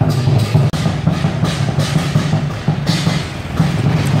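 Lion dance drum and cymbals beating a steady, repeating rhythm.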